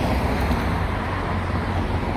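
Steady outdoor background noise with a deep rumble, the kind of mix that road traffic and wind on the microphone give, starting abruptly at a cut just before.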